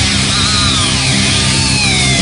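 Heavy metal band playing live: distorted electric guitars over bass and drums, with high notes sliding down in pitch twice.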